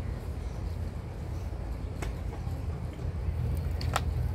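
Open-air stadium background noise, mostly a steady low rumble, with a faint click about halfway through and a sharper click near the end.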